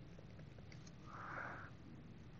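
A short sniff about a second in, a brief breath through the nose close to the microphone, over faint room hum, with a few faint taps of a stylus on a tablet screen.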